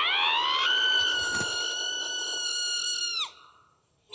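A cartoon character's long, very high-pitched scream that rises at first, holds one steady note for about three seconds, then drops off suddenly and fades out.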